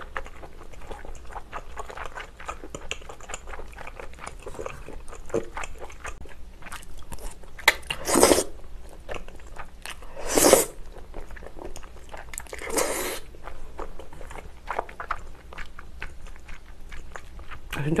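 Close-miked eating of creamy noodle tteokbokki: wet chewing and mouth clicks throughout, with three loud slurps of sauce-coated noodles about eight, ten and a half, and thirteen seconds in.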